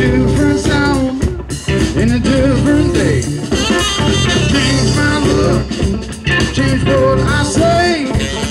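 A band's recorded song playing, with guitar over bass and drums and no lyrics heard.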